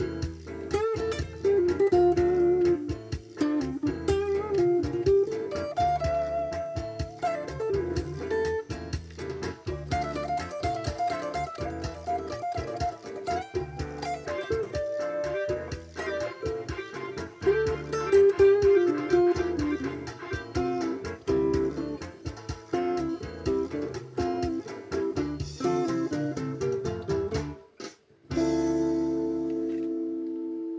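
Electric guitar playing a slow melodic lead line with long held notes over a steady lower accompaniment. Near the end the music stops for a moment, then a final chord rings out and fades.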